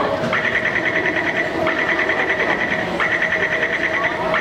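Taipei MRT door-closing warning: a rapid train of high-pitched beeps, sounding in stretches of a little over a second with short breaks between them, over a steady hum from the train and station.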